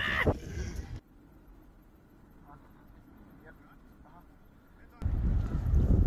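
Wind buffeting the microphone, a low rumbling noise, for about a second. It cuts out abruptly to near silence with faint distant voices, then returns just as suddenly about five seconds in.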